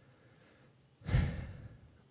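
A man's sigh into a close microphone about a second in: a breath out with a low rumble that fades away over about a second, after a second of near silence.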